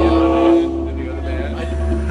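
A live band's held note rings for about half a second and then fades, over a steady low rumble, with people's voices near the microphone.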